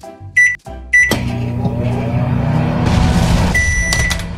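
Toy microwave oven: two short button beeps, then a steady hum for about two and a half seconds as it runs a cooking cycle, ending with a longer beep when the cycle finishes.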